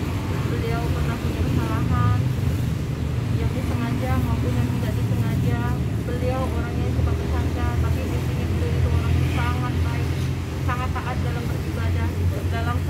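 Indistinct voices of several people talking in the background, over a steady low rumble.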